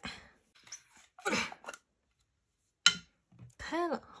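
The screw-on lid of an aluminium slime tin being twisted off by hand, with scraping and rubbing, and a single sharp click about three seconds in. A few words of speech follow near the end.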